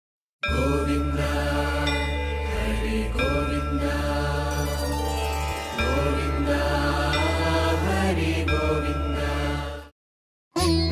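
Devotional intro music: a chanted mantra over a steady low drone. It starts about half a second in and fades out just before the end.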